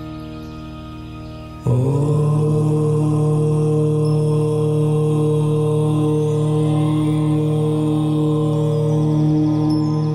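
A soft ambient music drone, then about two seconds in a loud chanted "Om" starts suddenly and is held long on one low pitch.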